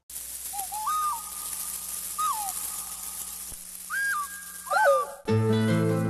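Whistled bird calls in tropical forest: about four short, clear calls, some rising then holding and others falling, over a steady high hiss. Music with plucked notes comes in about five seconds in.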